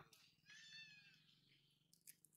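Near silence with one faint, short animal call about half a second in, its pitch falling slightly.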